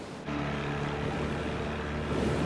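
Outboard motor of a Zodiac inflatable boat running at a steady speed, mixed with the rush of wind and sea. It comes in suddenly about a quarter second in, replacing the hiss of wind and waves.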